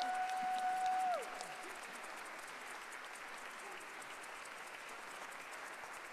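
Applause, steady and fairly faint, at the end of a song. Over the first second a single held note sounds, then bends downward and stops.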